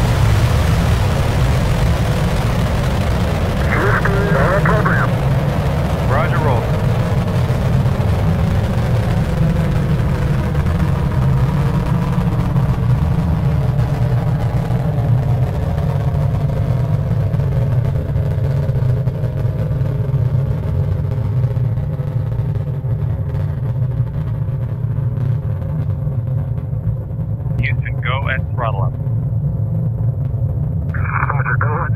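Space shuttle launch rumble during ascent: a loud, steady low roar of the rocket engines, its higher hiss fading over the second half as the vehicle climbs away. Brief radio voice snippets come through it a few seconds in and near the end.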